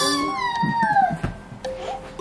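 A small child's high-pitched wail, sliding down in pitch over about a second.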